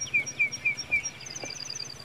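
Birds chirping: a steady run of short, falling chirps about five a second, joined about halfway through by a higher, faster run of paired chirps.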